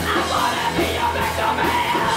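Live rock band playing loud with drums, bass and electric guitar, while a singer yells one long held note over it.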